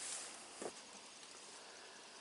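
Faint outdoor background hiss while the camera is picked up and moved, with one brief soft knock about half a second in.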